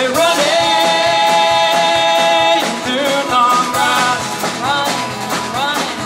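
Live acoustic folk-rock band playing, with strummed acoustic guitars, electric bass and drum kit. A voice holds one long sung note for about two and a half seconds, then moves into shorter sung phrases.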